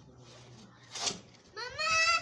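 An animal's call: one drawn-out, high-pitched cry near the end, rising slightly in pitch, after a brief rustle or breath about a second in.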